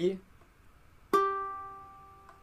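A single ukulele note plucked about a second in, the third fret of the E string, ringing and slowly fading away.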